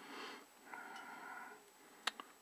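Faint breathing through the nose, a soft breath near the start and a longer one through the middle.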